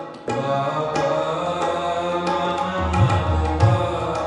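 Sikh shabad kirtan music: tabla playing under sustained harmonium tones. The music dips briefly right at the start, and two deep tabla strokes sound about three seconds in.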